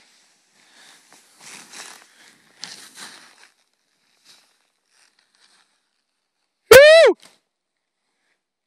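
Faint swishing of skis turning through powder snow, then near the end a single loud whoop that rises and falls in pitch.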